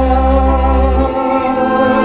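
Music holding a sustained chord, with a man singing into a microphone; a low bass note drops out about a second in.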